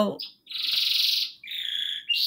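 A pet bird singing: two long, fast-trilled high notes, the first starting about half a second in, the second shorter and following right after.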